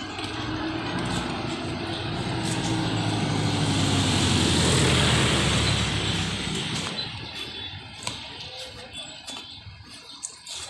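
A motorcycle engine passing close by on the street. It grows louder to a peak about five seconds in, then fades away.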